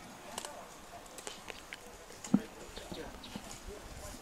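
Quiet outdoor ambience with scattered faint clicks and taps, and one sharper knock about two and a half seconds in.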